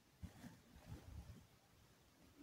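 Near silence with a few faint, soft swishes and knocks of a silicone spatula stirring soapy liquid in a plastic basin, a little after the start and again around a second in.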